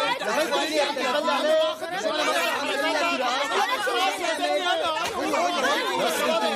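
Several voices talking over one another at once in a heated argument.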